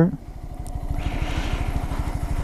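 Honda Grom's 125 cc single-cylinder four-stroke engine running at low revs with a steady, rapid low putter as the bike rolls slowly. A soft hiss joins in about a second in.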